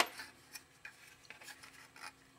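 Faint handling noises: a few light clicks and rubbing as a hard plastic mount in a plastic bag is picked up and turned in the hand.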